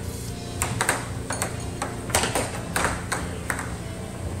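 Air hockey mallets and puck striking in a fast rally, a quick irregular series of sharp clacks, over background music.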